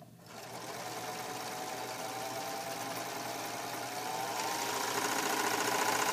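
A four-thread serger running under foot-pedal control, stitching and knife-trimming a fabric edge and then running off the end to form the thread-tail chain. It starts just after the beginning, runs steadily, then speeds up and grows louder in the second half.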